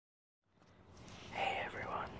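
A man's faint, breathy, whispered speech, starting about a second in after near silence.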